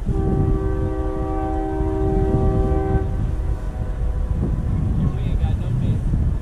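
A train horn sounding one long chord of several steady tones for about three seconds, starting just after the beginning and then stopping, over a steady low rumble.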